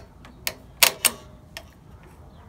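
Four sharp metallic clicks spread over two seconds, from the throttle linkage on a VW Beetle's carburetor being worked by hand.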